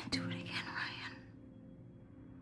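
A woman's breathy, whispered vocal sound lasting about a second and a half, over soft background music with steady low notes.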